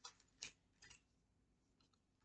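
Near silence with a few faint clicks of oracle cards being handled in the hands, in the first second.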